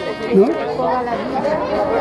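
People talking, with overlapping voices in the background and a man's brief "¿sí?" at the start.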